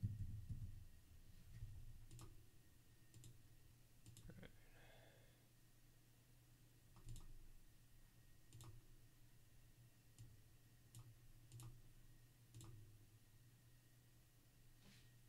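Faint computer mouse clicks, about ten of them scattered irregularly a second or so apart, over a low steady hum.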